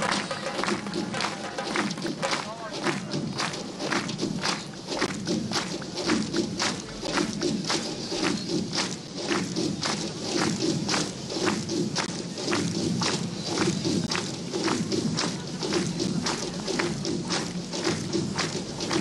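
Drums beaten in a steady rhythm of about two sharp strokes a second, over a dense mass of voices or instruments.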